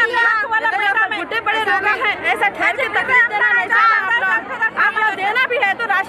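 Speech only: several women talking at once, their voices overlapping in a crowd.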